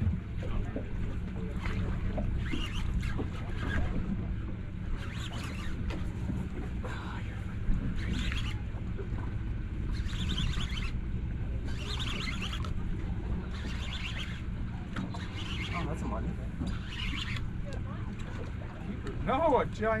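Steady low hum of the boat's idling outboard motor with wind on the microphone, and short intermittent bursts of whirring as a fishing reel is cranked to bring up a heavy hooked fish.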